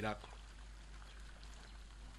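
A pause in a man's speech: the end of a word right at the start, then only a faint steady background hiss with a low hum.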